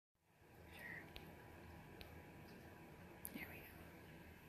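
Near silence: quiet room tone with faint whispering and a few light clicks.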